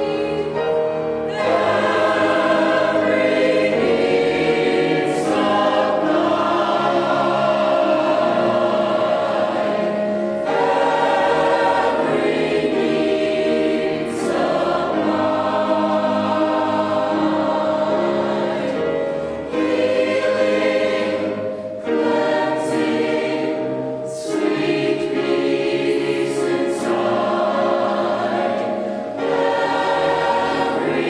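Mixed choir of men and women singing a sacred choral piece, in long sustained phrases with brief breaks for breath between them.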